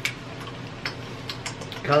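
People chewing jelly beans: a few soft, scattered mouth clicks over low room noise, with a spoken word near the end.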